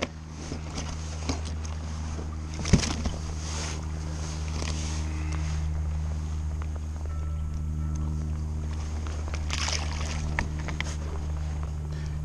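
Steady low drone of a motorboat engine running nearby, with a few light knocks and handling noises on the kayak.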